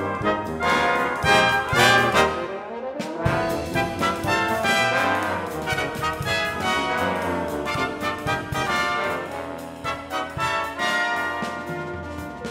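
A brass ensemble of trumpets and trombones playing a fast, busy passage. It is loudest in the first two seconds and breaks off briefly about three seconds in before going on.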